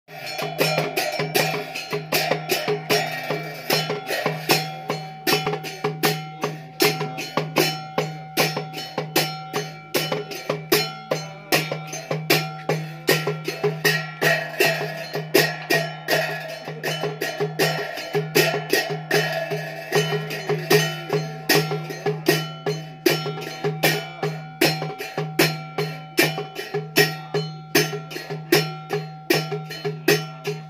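Small hand-held metal cymbal struck in a steady ritual beat, about three strikes a second, each strike ringing briefly, over a steady low tone.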